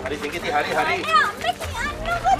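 Speech: people's voices talking, with more than one voice at a time.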